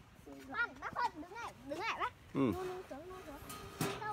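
Young children's high voices chattering, an adult's brief "ừ" about two seconds in, and a single sharp click just before the end.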